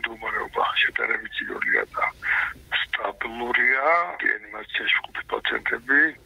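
A man speaking Georgian over a telephone line, his voice thin and band-limited, talking without a break.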